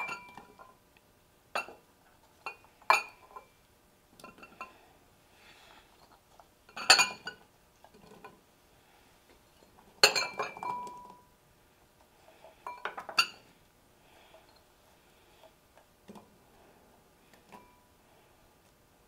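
A small glass bowl clinking against ceramic serving bowls as chopped vegetables are tipped out of it: scattered sharp chinks, some with a brief ring. The loudest come in clusters about seven and ten seconds in.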